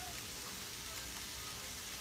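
Faint, steady sizzle of food cooking in a pan on the stove.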